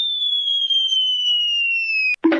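Cartoon falling-whistle sound effect: a single high whistle tone gliding slowly down in pitch, the stock sign of a character dropping through the air.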